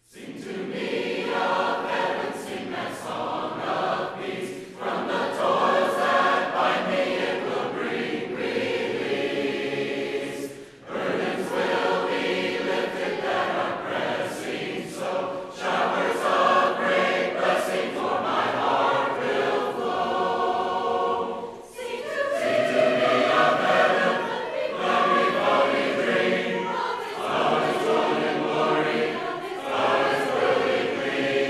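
Church congregation singing a hymn together, unaccompanied, in short phrases with brief breaks between lines.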